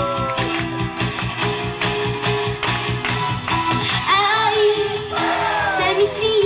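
A young female pop singer singing live into a handheld microphone over backing music with a steady beat, heard through a PA system. Near the end, her sung phrases slide down in pitch.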